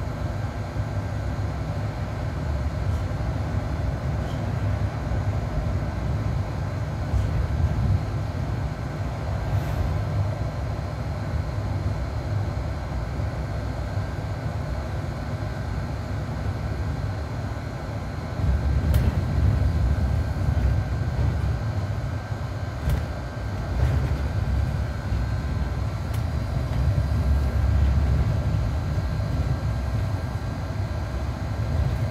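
Inside a Mercedes-Benz Citaro C2 G articulated city bus under way: a steady low rumble of the engine and running gear with road noise, swelling louder for a few seconds past the middle and again near the end.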